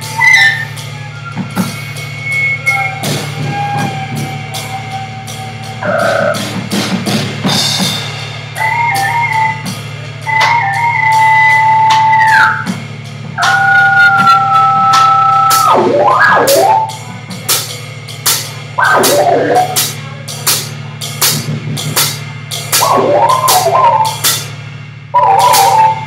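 Live free-improvised electronic jazz from electric cello, synthesizer and drum kit. Held tones a second or two long step between pitches and bend or slide downward, with a steady low drone beneath and scattered drum and cymbal hits that grow busier near the end.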